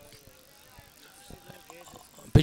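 Faint open-field ambience from a cricket ground, with distant players' voices calling across the outfield.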